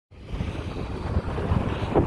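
Wind buffeting the microphone: a steady, uneven low rumble with a hiss above it.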